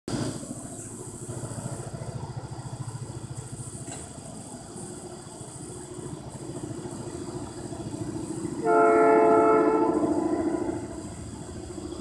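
Distant Nathan P3 three-chime locomotive air horn: after a low rumble, one long horn blast starts about nine seconds in and fades away.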